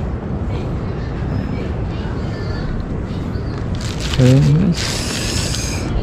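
Steady, low outdoor background noise with no clear source, the kind of rumble that wind on the microphone or the sea makes, with a single spoken 'okay' about four seconds in. A short high hiss follows about a second later.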